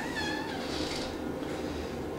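A cat meowing once, a short call that rises and then falls in pitch near the start, over steady room noise.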